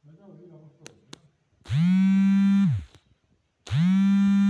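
Two loud, low buzzing tones of about a second each, two seconds apart, each sliding up in pitch as it starts and down as it stops, after a faint hum and two sharp clicks.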